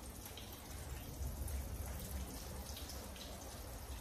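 Fish frying in hot oil in a pan, a faint steady sizzle, with a low hum underneath.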